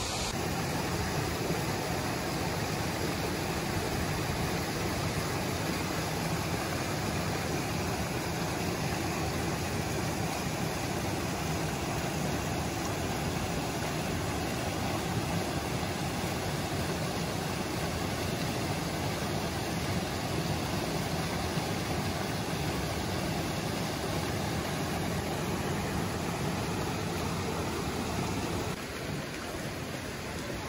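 Shallow mountain stream rushing steadily over rocks and through the arches of a low stone footbridge, a continuous even wash of water. It drops a little in level near the end.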